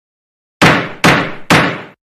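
A judge's gavel strikes three times, about half a second apart, each knock sharp with a short ringing tail.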